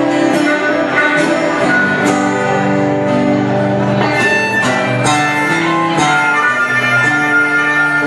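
Live acoustic-style music: a guitar strumming with regular strokes under a harmonica playing sustained, changing held notes.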